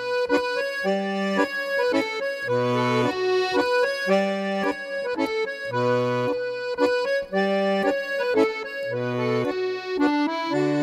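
Accordion playing an instrumental passage: sustained chords and melody over left-hand bass notes that alternate between a lower and a higher note about every second and a half.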